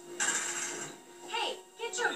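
A metal school locker being opened: a short mechanical rattle of the latch and door, then a second shorter clack, under faint voices.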